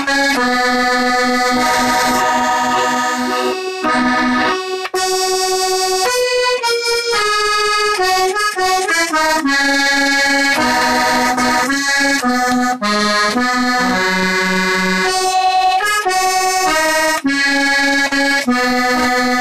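A small button accordion (squeeze box) playing a tune, with a melody moving over held chord notes. There is a brief break about four seconds in, then the tune carries on.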